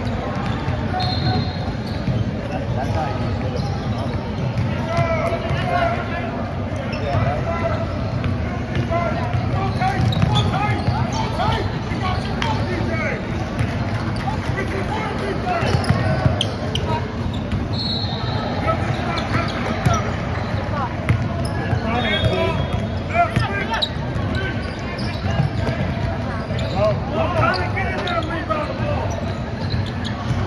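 Basketball game on a hardwood gym court: the ball bouncing, over steady chatter and calls from spectators and players. A few short, high squeaks stand out, about a second in and again past the middle.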